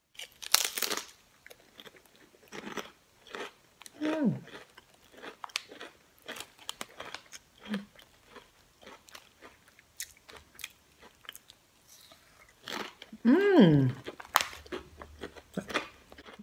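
A Rap Snacks potato chip bitten with a loud crunch about half a second in, then chewed with many short, crisp crunches.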